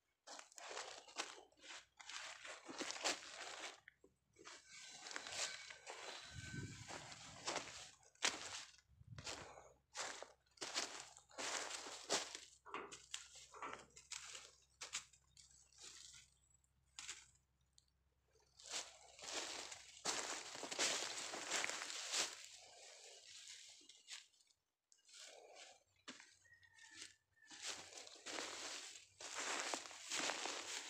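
Irregular footsteps crunching and rustling through dry fallen leaves and straw, with short pauses.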